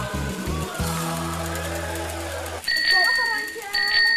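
Background music that stops abruptly about two-thirds of the way in. A bicycle bell then rings twice, each ring held for about a second, over children's voices.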